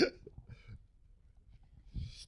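The end of a man's laugh through a microphone, then a faint breathy chuckle and a mostly quiet pause. A short breath or rustle comes near the end.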